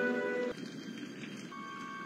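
Film score of sustained, tense held tones: a full chord that cuts off about half a second in, then a quieter stretch with a single high held note coming in about a second and a half in.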